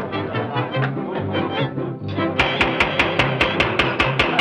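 A brass band playing lively music over a stepping bass line. Just past halfway, quick, even percussion hits come in at about seven a second.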